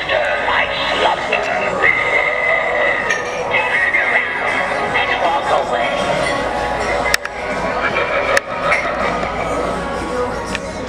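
Animated Halloween gargoyle candelabra decoration, switched on, playing its sound effects: a voice over music. Two sharp clicks come near the end.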